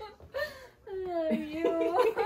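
A woman's voice crying out with emotion, tearful and half laughing: short broken cries, then a longer held cry from about a second in.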